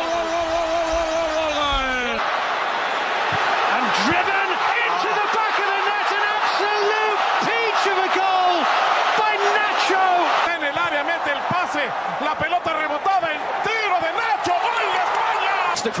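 A football commentator's long, held goal cry falls in pitch and breaks off about two seconds in. It is followed by fast, excited shouted commentary over stadium crowd noise, celebrating a goal.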